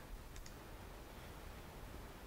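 A faint computer mouse click, a quick double tick about half a second in, over quiet room tone.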